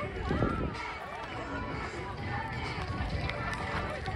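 Background chatter of many people talking at once, none of it clear, over a steady low rumble. One voice stands out briefly just after the start.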